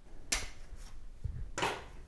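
Handling noise as a circuit board clamped to its front panel is unclamped: two short scrapes and a soft knock.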